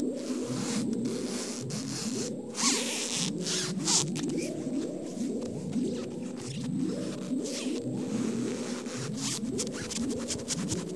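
Soundtrack sound effects: a dense run of short rising warbling tones, several a second, with brief hissing swishes about three and four seconds in.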